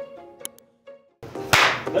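A short plucked-string jingle whose last few notes die away about a second in, then a single sharp hand clap near the end.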